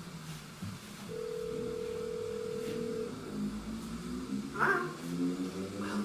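A steady telephone tone lasting about two seconds, over low sustained notes that shift in pitch, in the intro of a recorded power-metal song.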